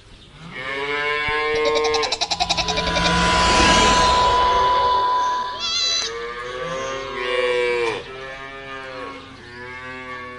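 A cow mooing: several long, drawn-out moos. Between them a steady high tone sounds, with a rushing noise under it.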